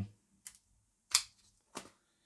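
Three short sharp clicks and taps, the middle one the loudest, from hands handling a cardboard retail box and a folding knife.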